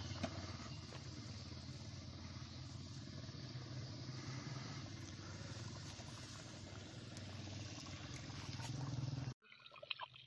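Steady rushing noise with a low rumble underneath. It cuts off abruptly near the end.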